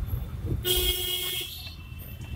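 A vehicle horn honks once, for just under a second, starting about a second in. Under it runs the car's own low engine and road rumble, heard from inside the cabin.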